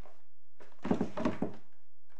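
Handling noise near a courtroom microphone: a short cluster of thunks and rustle about a second in, as papers are handled while the page is found, over a steady low electrical hum.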